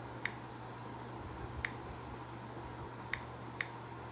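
Four faint, short, sharp clicks at uneven intervals, the last two close together near the end, over a steady low electrical hum and room hiss.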